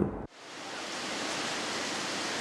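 A man's last spoken syllable, cut off sharply. A steady, even hiss of background noise then fades in and holds.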